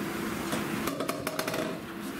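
Room tone: a steady hum in a lecture room, with a quick run of small clicks about a second in.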